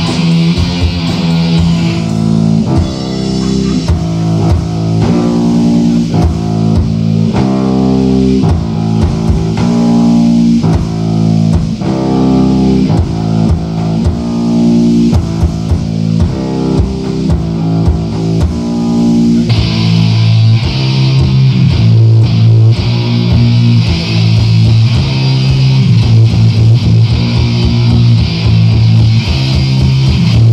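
Black metal band playing live, with distorted electric guitar, bass guitar and drums on a raw bootleg tape recording. The riff changes about two-thirds of the way in to lower notes with denser, faster drumming.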